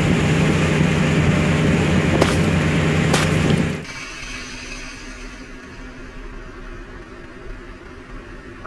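A fishing vessel's engine runs steadily with water rushing along the hull, and two sharp knocks come about two and three seconds in. Just before four seconds in, the sound drops suddenly to a quieter low hum with the wash of the sea.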